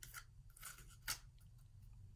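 Faint crinkling of paper as fingers bend out the cut strips at the top of a rolled paper tube, a few soft ticks with the clearest about a second in.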